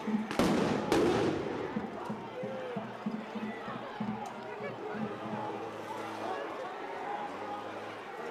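Two sharp bangs about half a second apart, each with a trailing echo, then a steady crowd din with scattered distant voices.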